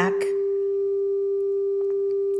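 A steady 396 Hz pure tone played back from a computer, holding one unbroken pitch. It is the tone used for root-chakra toning.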